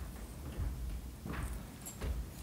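Footsteps of people walking across a stage: a few low, uneven thuds.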